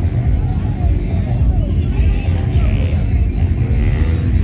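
Outdoor event ambience: a steady low rumble under faint background voices.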